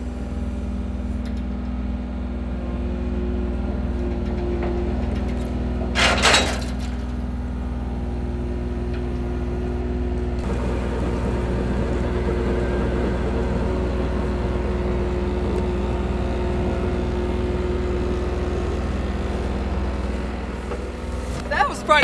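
Diesel engines of a John Deere compact track loader and a mini excavator running steadily while the excavator, chained to the loader's front, swings the loader around on ice. There is a short sharp burst of noise about six seconds in. From about ten seconds in, the machine noise gets busier and a little louder.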